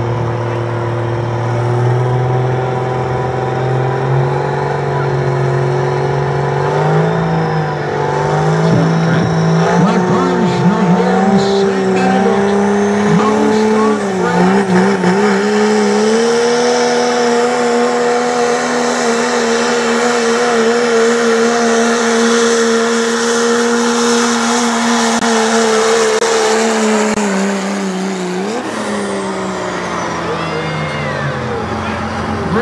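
Pickup truck engine at full throttle pulling a weight-transfer sled down a dirt track: its note climbs in steps, wavers twice, holds high for about ten seconds, then drops off near the end as the pull finishes.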